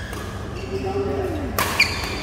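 Badminton doubles rally in a large hall: a short held call from a player's voice, then near the end sharp racket hits on the shuttlecock with a brief high ring, echoing in the hall.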